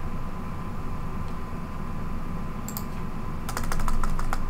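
Computer keyboard typing: a quick run of keystrokes near the end, after a single click a little earlier, over a steady low background hum.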